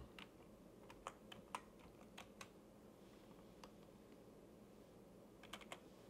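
Computer keyboard typing: a slow, irregular run of single keystrokes, about nine in all, with a few quick taps together near the end, against near silence.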